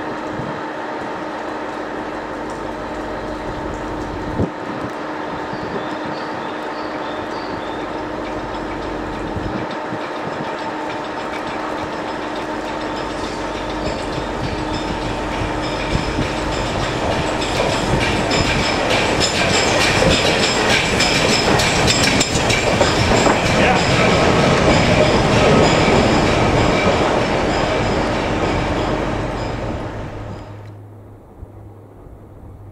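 LMS Jubilee class 4-6-0 steam locomotive running slowly through station pointwork towards the listener, hissing steam. It grows louder in the second half as it draws close and passes, with many clicks of wheels over rail joints and points.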